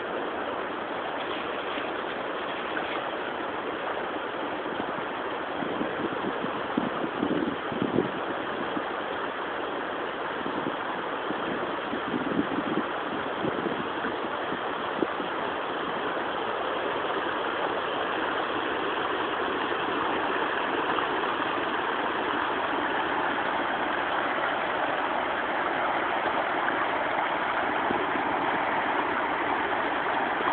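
Shallow rocky river running high, its water rushing over the stones as a steady rush that grows louder in the second half. A few brief bumps sound about six to eight seconds in and again around twelve seconds.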